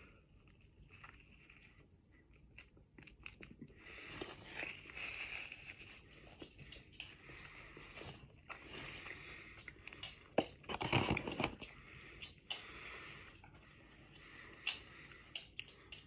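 A person biting into a crispy fried chicken sandwich and chewing it, with soft crunches and mouth clicks and a louder spell of chewing about eleven seconds in.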